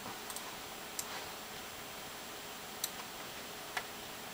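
Computer mouse clicking: about four faint, separate clicks spread over a few seconds, over steady low room hiss.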